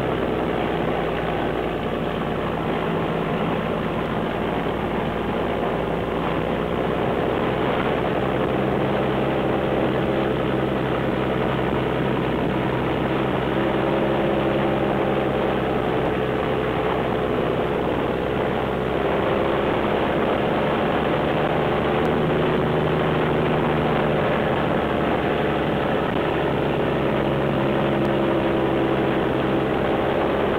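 Diesel engine of a loaded Peterbilt log truck running steadily through loud exhaust stacks as the truck rolls down a gravel logging road. The engine note holds nearly constant, with small shifts in pitch.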